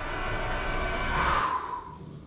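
A man's long, breathy sigh, swelling and then fading away near the end.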